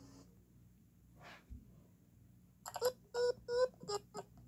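Mostly quiet, then near the end a quick run of about four short, steady-pitched electronic tones played through a tablet's speaker.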